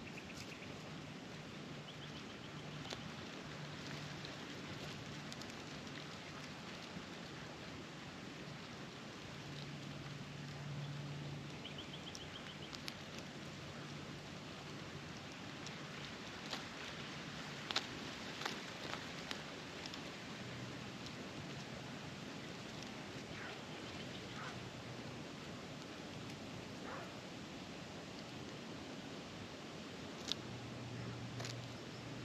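Australian magpies foraging in dry straw mulch: a steady rustle of straw with scattered small pecking clicks, a short run of sharper clicks a little over halfway through.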